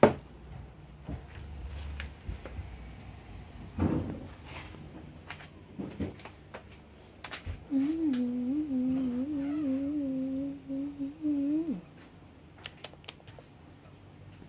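A person humming a steady, slightly wavering note for about four seconds past the middle, then stopping. Before it come a sharp click at the very start and a few scattered knocks.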